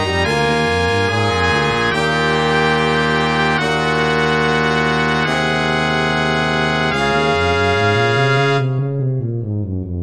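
Brass quartet of two B-flat trumpets, trombone and tuba in D-flat major playing held chords. About nine seconds in, the upper parts fall away and the tuba carries on alone with a running line of quick notes.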